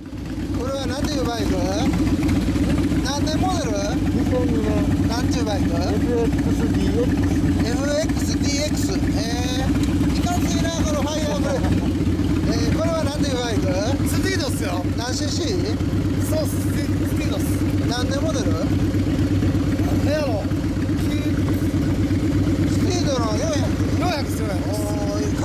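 V-twin motorcycle engine idling steadily, with people talking over it.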